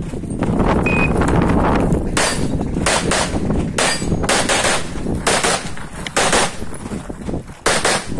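A shot timer's short start beep about a second in, then a 9mm CZ Shadow 2 pistol fired rapidly, in quick pairs and single shots, for about six seconds. The last shot comes near the end.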